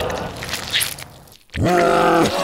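Dense noise fades away to a brief moment of near quiet. About a second and a half in, a person cries out "No!" in a loud, desperate voice that falls in pitch.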